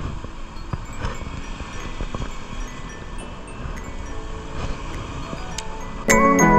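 Steady wind and sea noise at a rocky harbour shore, with faint scattered tinkling tones over it.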